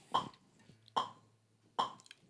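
Three short, sharp clicks, evenly spaced a little under a second apart, setting the tempo just before the guitar is played.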